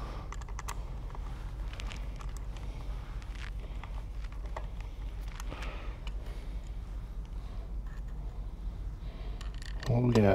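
Scattered faint metallic clicks of a short bolt and small hand socket driver being worked into a Ford 7.3 Godzilla cam phaser, over a steady low hum.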